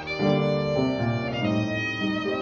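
Violin playing a slow melody of held notes that change pitch several times, with upright piano accompaniment underneath.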